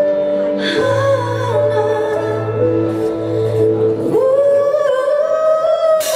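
Female vocalist singing live with band accompaniment: held bass and chord tones under her voice. About four seconds in, her voice slides up into a long held note.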